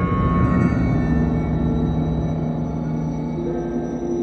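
Chamber orchestra playing a passage of contemporary music built on low sustained notes, with a higher held note joining about three and a half seconds in.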